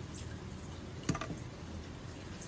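A single light knock about a second in as the pistol parts are handled, over a low steady room hum.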